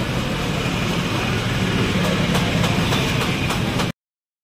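Steady low engine-like hum with a few faint ticks of a screwdriver working on the motorcycle's headlamp fittings; the sound cuts off suddenly just before the end.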